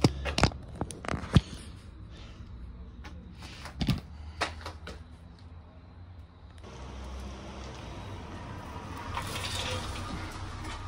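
Several sharp clicks and knocks from equipment being handled, bunched in the first second and a half and again about four seconds in. A steady hiss sets in about two-thirds of the way through.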